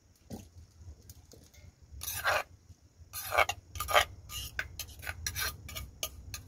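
A spoon scraping papaya salad out of a mortar onto a metal tray: a run of irregular scrapes and knocks that grows louder from about two seconds in.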